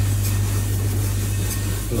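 Steady low hum with an even airy hiss, the kind of constant drone a commercial kitchen's extractor fan makes while running.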